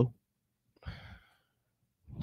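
A single short, faint breath or sigh into a microphone about a second in, in an otherwise near-silent pause.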